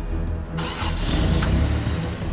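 Cartoon monster-truck engine sound effect: a motor running and revving, coming in about half a second in, over background music.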